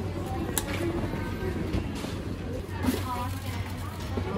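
Coffee-shop background at the serving counter: indistinct voices over a steady low hum, with two sharp clicks of cups or utensils being handled, one about half a second in and one near three seconds.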